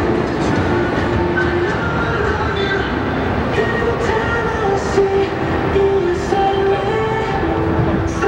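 Loud, steady city street noise, a continuous low rumble of traffic, with a faint music melody running over it.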